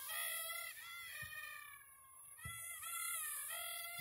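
Small toy quadcopter's motors whining: a thin, high, many-toned whine whose pitch wavers and that breaks off and comes back a few times. Two faint low thumps come through about a second in and again halfway through.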